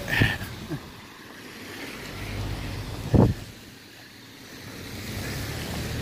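Cars driving past on a rain-wet street, their tyres swishing in a rush that swells and fades twice. A sharp thump about three seconds in is the loudest moment.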